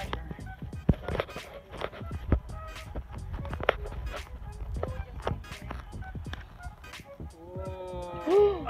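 Footsteps over dirt, twigs and leaves, heard as a string of irregular crackles and knocks, mixed with handling noise from a handheld camera.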